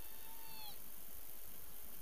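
Steady outdoor background noise on the camera microphone, with one faint drawn-out call near the start, held at one pitch for about a second and dropping off at the end.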